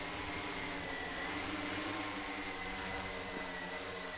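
Eight-rotor multicopter drone flying, its propellers and motors giving a steady buzzing hum with a high whine that wavers slightly.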